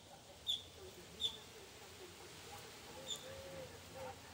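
A small bird chirping: three short, high chirps, the first two close together and the last about three seconds in.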